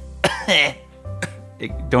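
A person coughing near the start, a sick person's cough, over soft background music.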